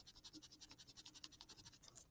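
Faint, rapid scratching of a felt-tip pen writing on paper: a quick run of short scratchy strokes.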